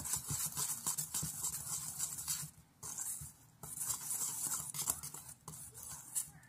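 A whisk stirring a dry flour-and-spice mix in a mixing bowl: a quick, scratchy swishing, with two brief pauses about halfway through.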